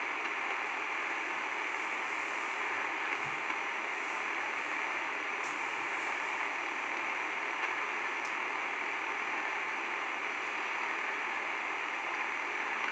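Steady, even hiss of background noise with no change over the whole stretch.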